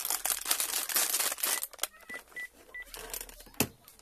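Four short, high beeps in quick succession about two seconds in: a phone line's tones as the call is disconnected. A single click near the end.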